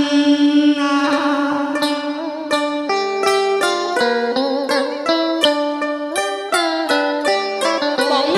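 Instrumental backing music: a plucked-string melody playing a run of short notes over an accompaniment.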